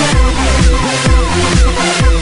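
Electronic dance music with a steady kick drum beat, about two beats a second, and falling synth sweeps between the beats.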